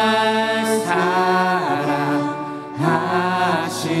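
A mixed group of voices singing a slow Korean worship chorus with instrumental accompaniment, holding long notes that slide down at the ends of phrases.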